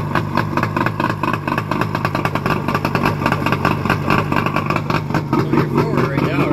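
1981 Johnson 50 hp two-cylinder two-stroke outboard motor running steadily out of the water, its rapid firing pulses even throughout.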